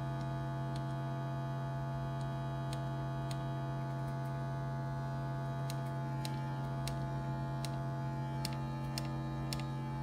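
Eurorack modular synthesizer oscillator sounding a steady low drone at one unchanging pitch, rich in overtones. A few faint, irregular clicks sound over it.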